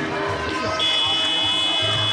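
Sports-hall scoreboard buzzer sounding one steady high-pitched tone, starting just under a second in as the game clock reaches zero: the signal that playing time is over.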